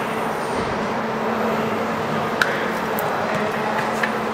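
Steady workshop background noise with a constant hum, and two short clicks, one a little past halfway and one about three seconds in, as a Porsche carbon-ceramic brake disc is picked up off a toolbox and handled.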